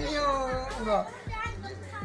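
A high-pitched voice calling out without clear words, its pitch dropping just before one second in, followed by quieter voice sounds.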